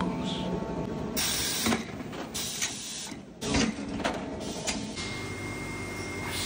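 Mechanical clatter in a moulding press area: irregular clicks and knocks, with a louder knock about three and a half seconds in, as moulded parts are handled. A steady high whine comes in about five seconds in.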